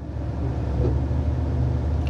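Low, steady vehicle rumble heard from inside a car, growing louder over about the first second and then holding.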